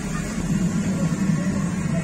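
A steady low mechanical hum with an even background haze.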